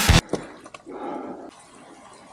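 Background music cuts off abruptly just after the start. Faint outdoor sound follows from a helmet-mounted camera on a climber scrambling over rock: a few light clicks and a short, soft rushing sound about a second in, then low, steady background noise.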